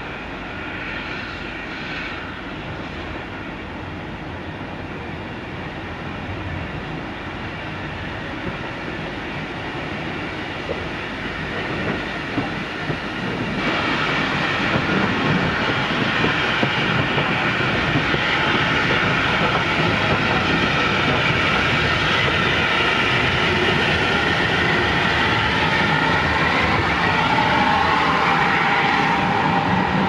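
Steam train double-headed by tank locomotives, led by Isle of Wight O2 class 0-4-4T W24, approaching and passing close by. It grows markedly louder a little under halfway through as the engines draw level. The coaches then roll past with a clickety-clack of wheels and a squeal near the end.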